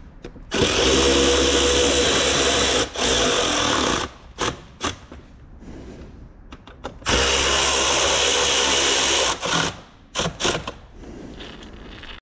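Power driver running in bursts as it turns fasteners: two long runs of about two seconds each, with a shorter run and a few brief blips between and after.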